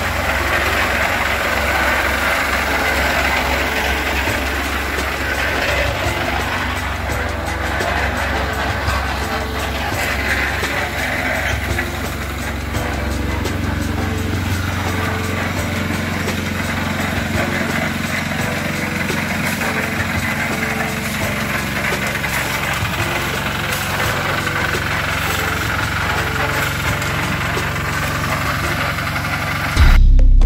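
Portable drum concrete mixer running steadily at a building site.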